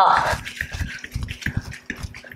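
Bare feet tapping quickly and unevenly on a yoga mat during fast mountain climbers, with a hard exhaled breath at the start.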